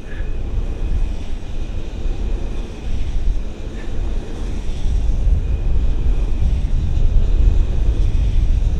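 Strong wind buffeting the microphone: a loud, gusty low rumble that grows stronger toward the end, with a faint steady high tone running underneath.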